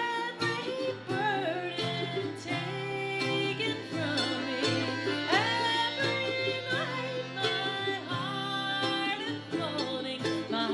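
Live acoustic country band playing: strummed acoustic guitar, accordion and fiddle, with a lead line that slides up into its notes several times.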